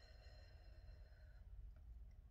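Near silence, with a faint, slow exhale through pursed lips that fades out about one and a half seconds in.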